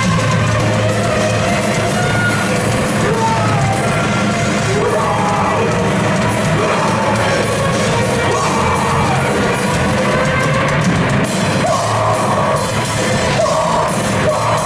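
Live heavy hardcore band playing loud: distorted electric guitars, bass and drum kit, with a singer yelling over them.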